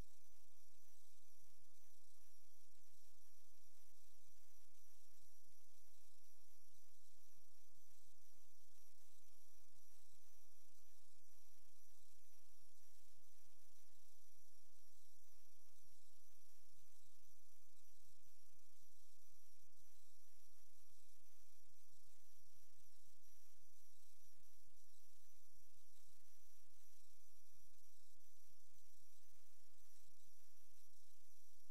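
Steady low electrical hiss with faint high-pitched whine tones and a low hum. This is the noise floor of the inspection camera's recording, with no other sound on it.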